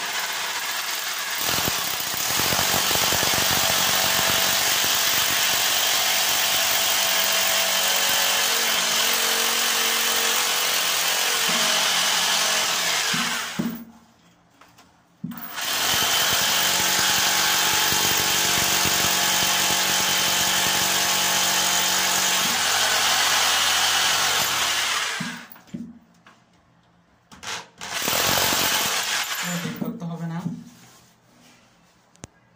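Handheld electric drill running under load as it drills, with a steady motor whine. It makes two long runs of about twelve and ten seconds with a short stop between them, then two brief bursts near the end.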